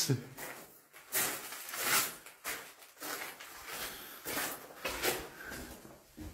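Footsteps scuffing over a gritty, gravelly floor: an irregular series of short scrapes, about one or two a second.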